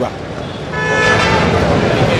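A vehicle horn sounds a little under a second in and is held as one long steady note, over background traffic noise.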